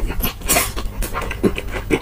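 Close-miked chewing of spicy Korean fried chicken with the mouth open: wet smacks and crunches in quick succession, with a brief louder burst about half a second in.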